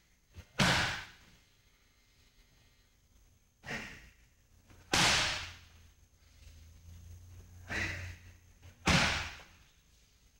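Punches landing on curved leather Thai pads in pairs, a lighter hit then a louder one, about every four seconds, each strike with a sharp hissing exhale from the fighter.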